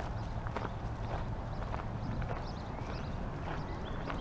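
Footsteps crunching on a gravel road at a steady walking pace, about two steps a second.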